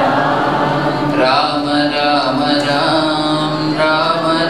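Group devotional chanting of a Hindu bhajan, several voices singing together in long held notes; a clearer, stronger sung line comes in about a second in.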